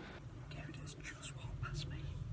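A person whispering softly over a steady low hum.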